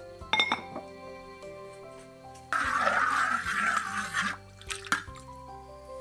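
A ceramic lid clinks against a clay pot, then liquid broth is poured into a bowl for nearly two seconds, the loudest sound, followed by a couple of light dish clinks. Soft instrumental background music plays throughout.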